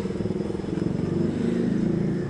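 An engine running at low revs nearby: a steady low hum whose pitch wavers slightly, easing off near the end.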